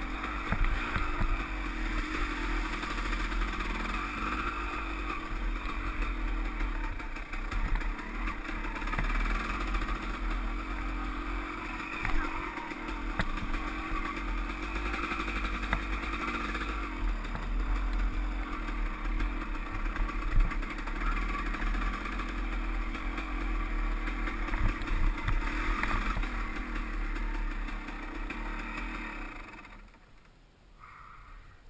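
KTM dirt bike engine running under way, with a few sharp knocks from the bike over bumps. The sound falls away near the end as the bike slows to a stop.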